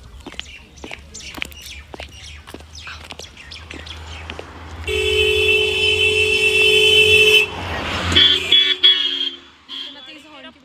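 A vehicle horn held in one steady two-note blast for about two and a half seconds, midway through, over a low rumble.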